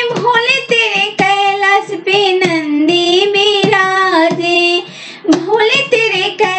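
A high solo voice singing a Bhojpuri Shiv Vivah folk song (vivah geet), with sharp percussive beats under it. The singing breaks off briefly about five seconds in.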